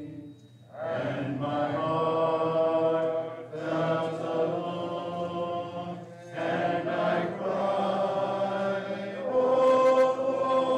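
Congregation singing a hymn together, without instruments, in long held phrases with a short break for breath about every three seconds.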